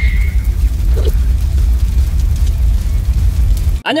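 Steel wool burning in a running line of sparks: a loud steady low rumble with a fine crackling hiss over it, cutting off abruptly near the end.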